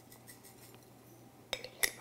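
Near silence, then about a second and a half in, two sharp clinks a third of a second apart as a small glass jar is put down.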